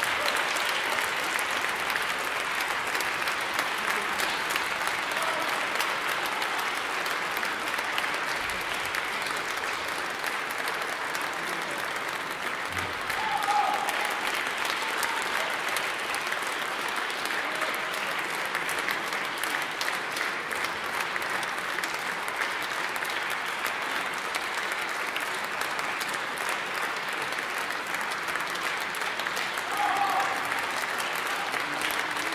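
Concert hall audience applauding steadily, a dense even patter of many hands clapping.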